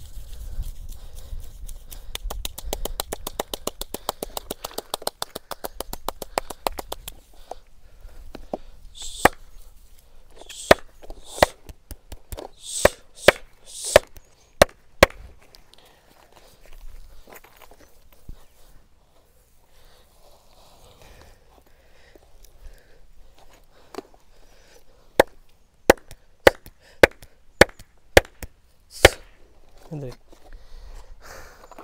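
Massage strikes with the hands on a seated man's head and shoulders: a fast run of light taps, about eight to ten a second, then a series of sharp slaps roughly every half second to a second. After a quieter stretch, another run of about eight sharp slaps comes near the end.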